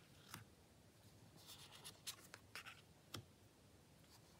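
Faint handling of tarot cards on a cloth: soft sliding swishes as cards are moved and laid down, with two light taps, one just after the start and one just after three seconds.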